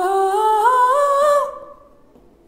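A man singing a sustained open 'aa' in forced falsetto, the pitch climbing in small steps and stopping about a second and a half in. The forced falsetto is shown as a fault for Hindustani singing.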